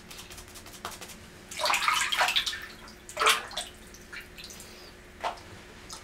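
Wet sounds of soapy water and lather, splashing and squishing in a few short bursts: a longer run about a second and a half in, another about three seconds in, and a brief one near the end.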